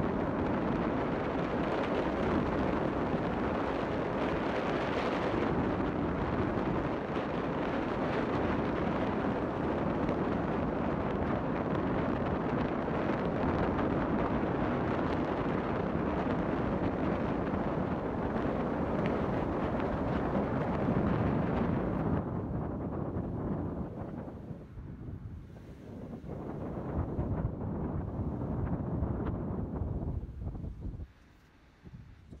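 Wind rushing over the microphone, mixed with the road noise of a moving car. The rush drops away about three-quarters of the way through and then builds again near the end as the car picks up speed.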